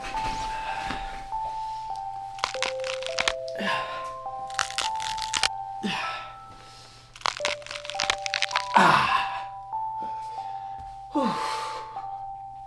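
Exaggerated joint-cracking sounds: clusters of sharp cracks in quick succession over background music with long held notes. Four falling sweeps break in between, the loudest about nine seconds in.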